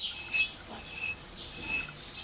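Fired clay refractory crucible scratched with a fingernail, ringing with a short, clear high tone three times. The clean ring is the sign of a fully matured ceramic with no cracks.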